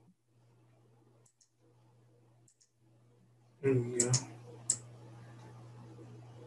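Light clicks of a computer mouse and keyboard: two soft pairs of clicks, then louder clicks about four seconds in.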